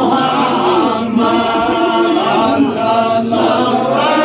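Several voices chanting a devotional hymn together, loud and continuous, phrase running into phrase.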